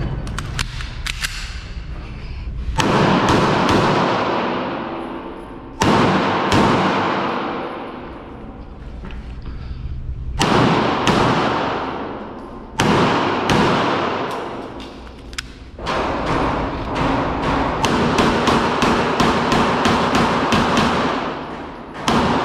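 Walther PDP 5-inch pistol fired in quick strings of shots, each string followed by a long echoing tail off the walls of an indoor range. There are four short bursts with pauses between them, then a long run of rapid shots through the last several seconds.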